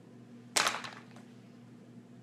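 A short, sharp clack of plastic makeup sticks being handled and set down, with a brief rattle after it about half a second in.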